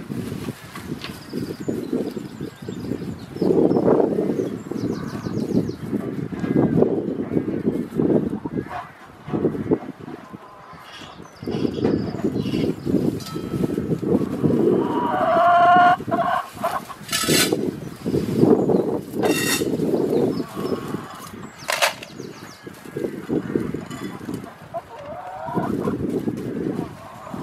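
Free-range chickens clucking on straw, with one longer pitched call about fifteen seconds in, over a loud, uneven low rumble.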